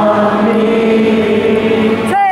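Live acoustic band performance: a long sung note held over piano and acoustic guitar, moving to a new pitch about half a second in, with several voices blending as if singing along.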